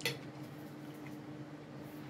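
Cutlery clinking once against a dinner plate right at the start, with a fainter tap about halfway, over a quiet room with a steady low hum.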